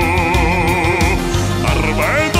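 A male singer holding one long sung note with a wide, even vibrato over band accompaniment with a steady drumbeat; the note ends about a second in and the band plays on.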